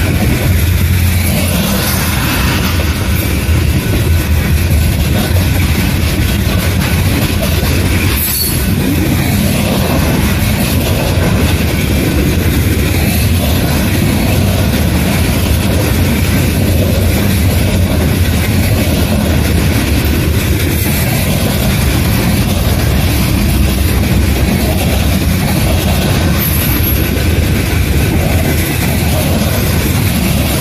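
Freight train's hopper cars rolling past at speed, a steady loud rumble of steel wheels on the rails.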